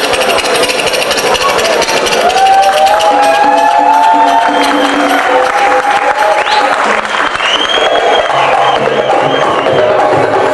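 Live Middle Eastern percussion music from a darbuka band: a dense, steady hand-drum rhythm under a wavering, ornamented melodic line.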